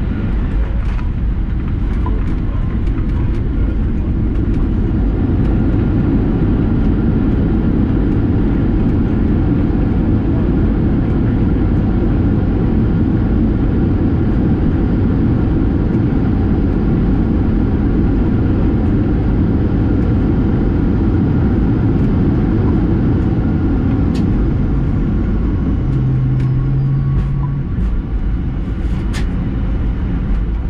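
Cabin noise of a Boeing 737-800 on its landing roll: a loud, steady rumble from the wheels on the runway and the engines. A brief low hum comes in a few seconds before the end, along with a few sharp clicks.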